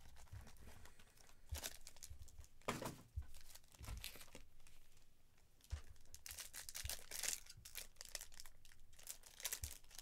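Faint, irregular crinkling and tearing of plastic: shrink-wrap being pulled off a trading-card box, then foil card packs being handled and torn open, busiest in the second half.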